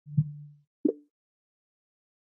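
Two soft pop sound effects of an animated title intro: a low thud with a brief low hum near the start, then a shorter, higher pop just under a second in.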